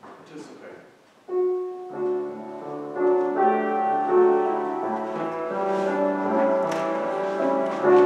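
A keyboard instrument starts playing slow held chords about a second in and keeps playing a gentle hymn-like melody.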